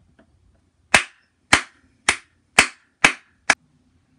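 Six sharp bangs about half a second apart, each with a short ringing tail.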